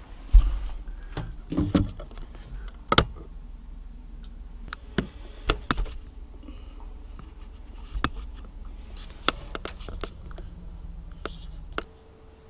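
Scattered knocks, clicks and rustling from handling the dishwasher's rubber drain hose and fittings inside the under-sink cabinet, over a low rumble; the loudest knocks come about half a second in and about three seconds in.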